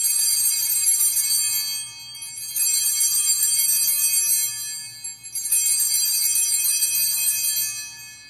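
Altar bells rung three times, each ring a bright cluster of high tones held for a couple of seconds before the last fades away, marking the elevation of the chalice just after the consecration.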